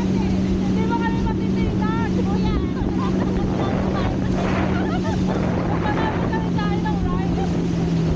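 Steady drone of the motorboat engine towing a banana boat at speed, with water rushing in the wake and wind on the microphone.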